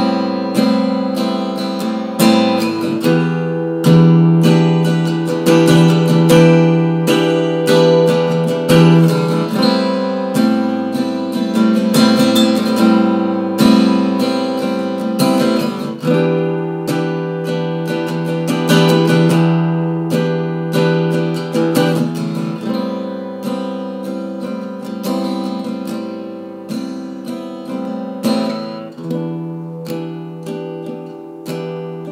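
Acoustic guitar strummed, alternating A minor 9 and E minor 7 chords every couple of measures. It is played loud and full, then gradually softer toward the end: the fall of a dynamic swell that builds and eases off.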